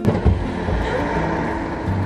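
A steady rush of outdoor car-park noise, cutting in suddenly with a click, over quiet background music.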